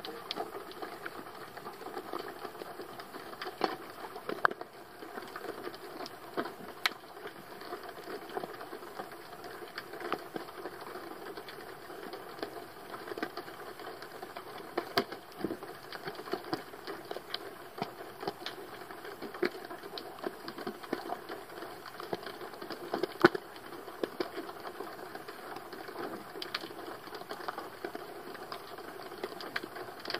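Underwater sound on a shallow sandy seabed, picked up through a camera housing: a steady wash of noise with frequent, irregular clicks and crackles throughout.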